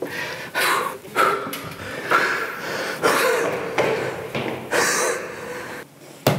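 A man breathing hard and panting, in heavy breaths about once a second, out of breath from climbing many flights of stairs at speed.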